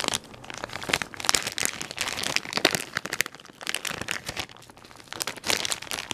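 Clear plastic bag of wax melts crinkling as it is handled, in bursts of crackling with a quieter stretch in the middle.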